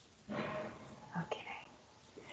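Quiet, indistinct speech coming over a video call: a short faint phrase just after the start, then a few brief sounds about a second in.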